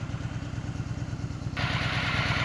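Motorcycle engine idling with a steady low pulse. About one and a half seconds in, a steady rushing hiss comes in suddenly over it.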